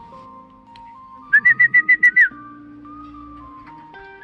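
A person whistling a quick run of about seven short, sharp high notes at one pitch, lasting about a second, the kind of whistle a pigeon fancier uses to call a returning racing pigeon down onto the loft; background music plays under it.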